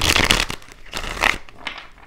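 Tarot cards being shuffled in the hands: two dense bursts of papery shuffling in the first second and a half, then a few lighter flicks of the cards.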